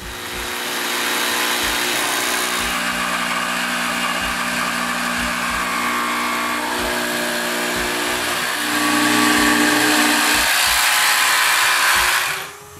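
Festool Carvex cordless jigsaw cutting a dovetail into the end of a wooden rail. It runs continuously, gets louder about two-thirds of the way through, and stops abruptly at the very end.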